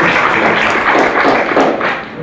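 Audience applauding, a dense patter of many hands clapping that thins out and dies away at the very end.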